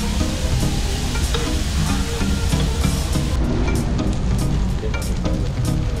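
Background music over pork belly sizzling on a hot griddle plate. The sizzling fades about halfway through, leaving the music.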